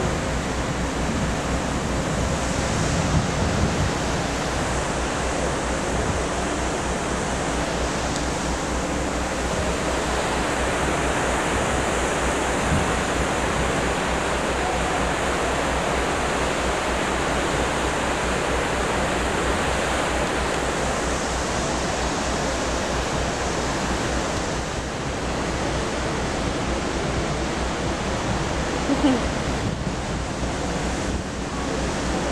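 Steady rushing noise of wind buffeting the microphone, mixed with the churning water of a cruise ship's wake.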